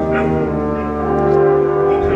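Opera orchestra playing sustained low chords, with brass prominent over the strings.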